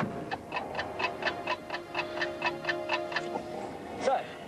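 Steady ticking of a bomb's timer, about four ticks a second, over music with a held low note.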